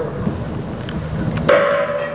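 A low rumble, then about one and a half seconds in a ship's horn starts sounding one loud, steady note that carries on.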